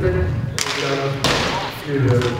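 People talking in a large hall, with two short hissy rushes of noise about half a second and a second and a quarter in.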